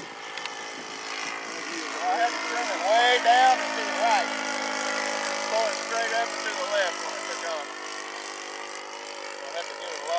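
The OS 120 four-stroke engine of a radio-controlled Tiger Moth biplane, running steadily at an even pitch in flight.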